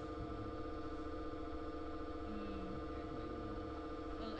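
Steady electrical hum with several held tones, running unchanged through the recording's background.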